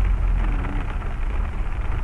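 Heavy rain falling on a moving car's windshield and roof, heard from inside the cabin over the low rumble of the car on the wet road.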